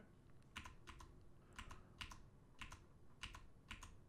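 Faint typing on a computer keyboard: about a dozen separate keystrokes at an uneven pace, some in quick pairs.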